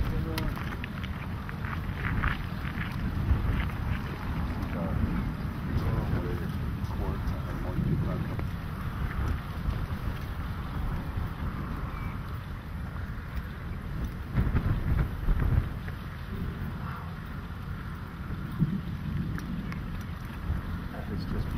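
Wind buffeting the camera microphone in open country under a thunderstorm: a steady low rumble that swells in gusts, strongest about two seconds in, around eight seconds and again around fourteen to sixteen seconds.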